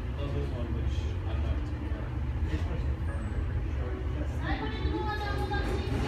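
Steady low rumble, like a vehicle running, under indistinct voices; a clearer voice comes in about four and a half seconds in.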